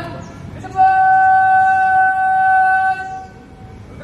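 A single drawn-out shouted parade command, readying the ranks of the assembled students: one loud, long note starting about a second in and held at a steady pitch for over two seconds before it drops away.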